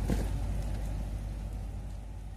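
Steady outdoor background noise with a low rumble, slowly fading in level.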